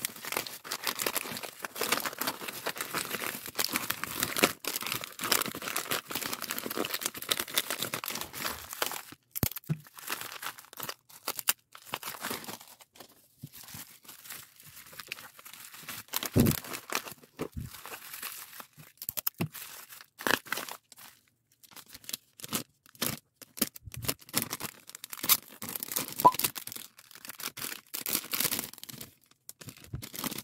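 Plastic packaging and bubble-wrap bags crinkling and rustling as they are handled and packed. The crinkling is continuous for about the first nine seconds, then comes in short scattered bursts with a few light knocks.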